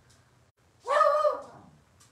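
A dog barks once, a single short, loud bark about a second in.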